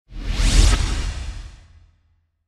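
A single whoosh sound effect with a deep low rumble under it, swelling up just after the start, peaking about half a second in and fading away over the next second.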